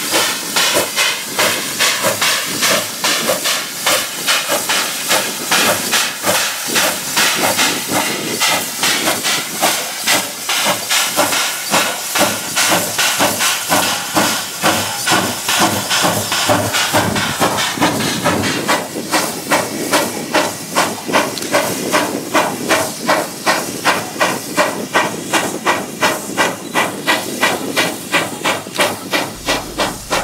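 Steam locomotive working a train, its exhaust beating out a steady rhythm of hissing chuffs, about three a second.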